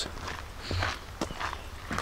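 Footsteps of a person walking, a few separate steps.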